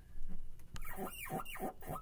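Chalk scratching and squeaking on a chalkboard in about four quick strokes, starting about a second in.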